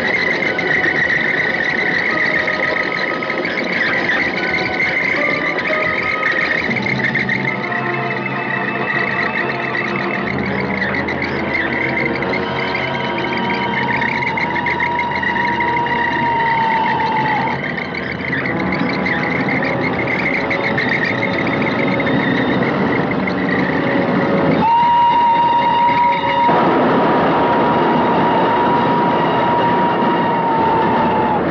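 Dramatic orchestral film score over the noise of an approaching steam train. A steam locomotive whistle sounds twice: a long held note from about 13 to 17 seconds in, and again from about 25 seconds in. Each drops slightly in pitch as it ends.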